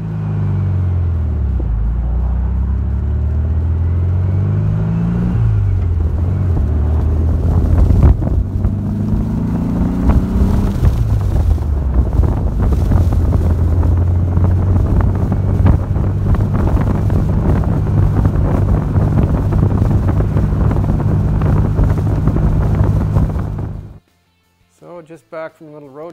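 Porsche 356 replica's Volkswagen-based engine with dual carburettors, pulling through the gears on the road. The engine pitch climbs, drops at a gear change about five seconds in, climbs again to another shift near eleven seconds, then holds steady at cruise. The sound cuts off suddenly near the end.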